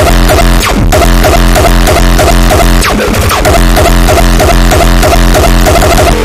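Hardcore techno (gabber) track playing loud, a fast kick drum pounding a steady, evenly spaced beat under repeating synth lines.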